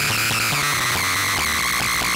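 Modular synthesizer tone through a Doepfer A-106-1 Xtreme Filter, set with high resonance and pushed so far that it breaks up into harsh distortion, mostly distortion rather than the original tone. It plays steadily, its energy sitting in a high, buzzy band with little low end.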